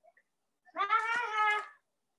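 A cat meowing once, a single drawn-out, fairly level call lasting about a second.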